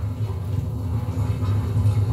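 A low, steady rumbling hum with no speech over it.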